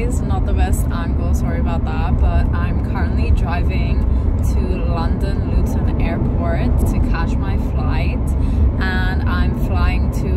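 Car driving on the road, heard from inside the cabin as a steady low rumble, with a woman's voice over it.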